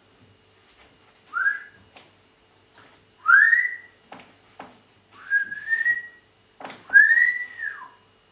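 A person whistling four short rising calls, a couple of seconds apart, the last one rising and then dropping away, with a few soft clicks between them.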